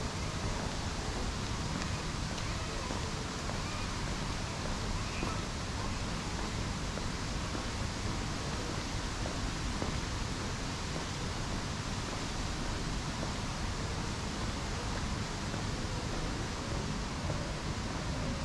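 Steady wind rumble on the microphone, with an even hiss above it and no distinct events.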